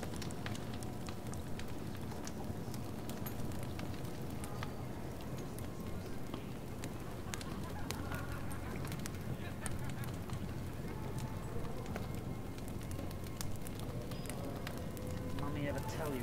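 Fireplace crackling with scattered pops over a steady low rumble, with faint muffled voices in the background around the middle and again near the end.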